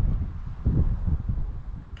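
Wind buffeting the microphone in gusts, a low rumble that eases off toward the end.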